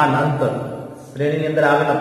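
A man's voice speaking in a lecture, with drawn-out words and a short pause in the middle.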